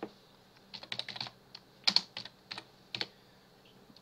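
Typing on a computer keyboard: a quick run of keystrokes about a second in, then a few single key presses, the loudest about two seconds in.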